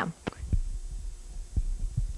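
Steady low hum with a few dull low thumps, about three, spread through the moment.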